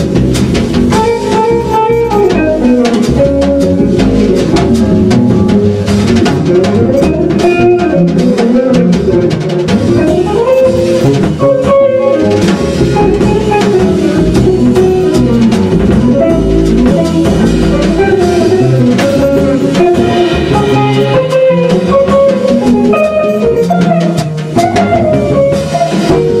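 Jazz trio of guitar, bass and drum kit playing a minor blues: guitar lines over bass notes and constant drum and cymbal strokes.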